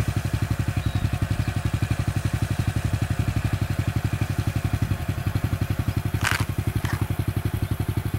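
Motorcycle engine idling steadily, a regular low throb of about twelve beats a second. Two short, high-pitched sounds come a little after six seconds in.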